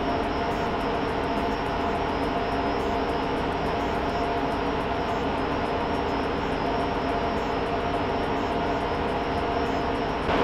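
Lenovo System x3650 M2 rack server's cooling fans running, a steady rushing whir with a few constant tones in it.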